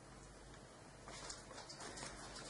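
Near silence, with faint rustling from about a second in as a small paper sticker packet is handled.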